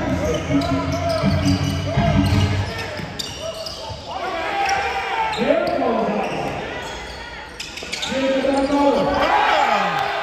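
Live basketball play in a gym: a basketball bouncing on the hardwood floor as it is dribbled, with sneakers squeaking in short rising and falling squeals about five seconds in and again near the end, under players' and spectators' voices.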